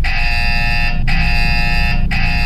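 Gojek GoPartner driver app on a smartphone sounding its loud new-order alert: a repeating electronic alarm tone, rings just under a second long with a brief break between each, signalling that a new booking has come in. A low car-cabin rumble runs underneath.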